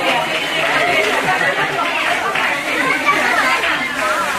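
A crowd chattering: many voices of adults and children talk at once and overlap, with no single speaker standing out, at an even level throughout.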